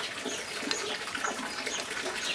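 A root hook scratching and raking dense old soil out of a bonsai's root ball, with loose earth crumbling and pattering down, and faint bird calls in the background.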